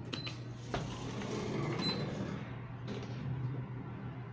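Elevator car in motion with a low steady hum, two short high beeps about a second and a half apart, and a few light clicks.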